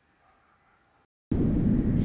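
Near silence, then a bit over a second in an airplane engine sound effect starts suddenly: a steady, low rumble.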